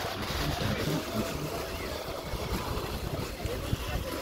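Wind on the microphone and small waves washing on a pebble shore, with far-off voices of people in the water.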